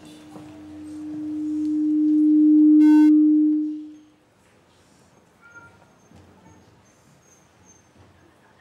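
A single low, pure steady tone that swells over about three seconds and then dies away about four seconds in, typical of a public-address system ringing into feedback. Only faint auditorium noise follows.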